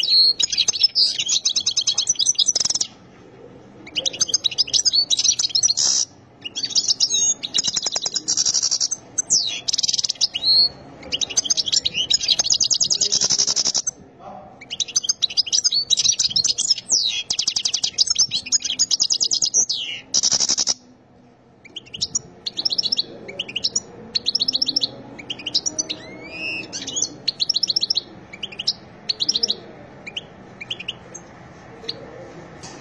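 European goldfinch singing: fast, high twittering song phrases in runs of a few seconds, broken by short pauses. In the last third the notes become sparser and quieter.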